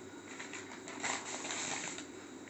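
Newspaper being rolled and handled by hand, a rustling and crinkling of paper that grows louder about halfway through.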